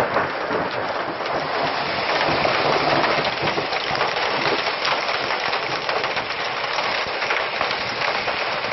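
Hail and heavy rain pelting down, a dense steady downpour studded with the sharp ticks of hailstones striking hard surfaces.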